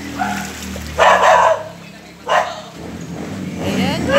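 A dog barking three times, the loudest bark about a second in.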